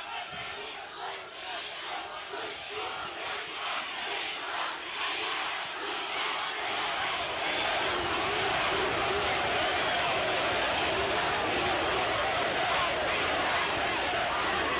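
A huge rally crowd shouting and chanting together. It builds up to about halfway through and then holds at a steady level.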